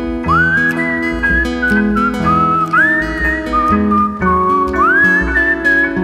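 An instrumental band passage: a high whistled melody that swoops up into three long held notes, over plucked double bass and acoustic guitar chords.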